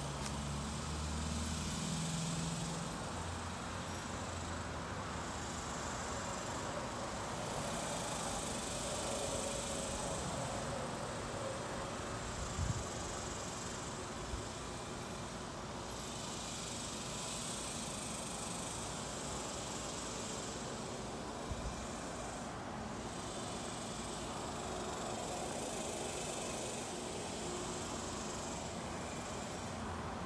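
Outdoor ambience dominated by a steady insect chorus that swells and fades every few seconds. A low hum sounds in the first few seconds, and there are a couple of faint knocks around the middle.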